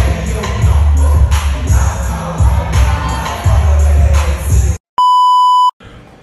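Loud dance music with a heavy, pulsing bass beat filling a reception hall, cutting off abruptly a little before the end. A loud, steady electronic beep of under a second follows.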